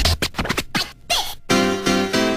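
Turntable scratching in an oldskool UK breakbeat track, with the drums dropped out: short choppy cuts with a swooping pitch. About one and a half seconds in, sustained keyboard chords come in.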